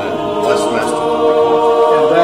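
A small mixed choir of men's and women's voices singing an Orthodox liturgical hymn a cappella, holding sustained chords.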